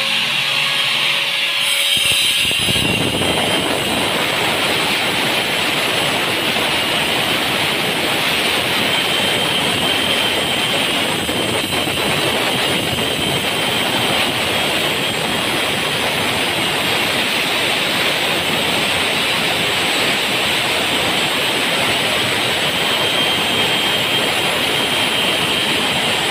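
A steady, loud machine noise with no rhythm or pitch changes. It starts about two seconds in and stays even throughout.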